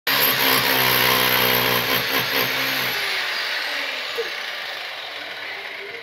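Corded electric rotary hammer chiselling at a floor. It runs for about three seconds and is then released, and the motor winds down with a falling whine.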